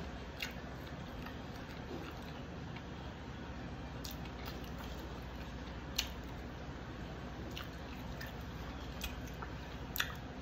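Quiet chewing and wet mouth sounds of someone eating sushi by hand, with a few short sharp clicks, the loudest about six seconds in, as fingers pick pieces out of a clear plastic takeout container.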